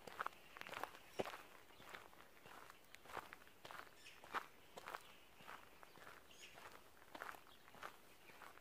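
Faint footsteps on a dirt forest floor strewn with pine needles, an irregular crunch or scuff about once or twice a second.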